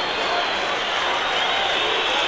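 Stadium crowd in the stands chanting and shouting the goalkeeper's name over a steady roar.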